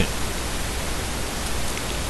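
Steady background hiss with a constant low hum underneath, unchanging throughout.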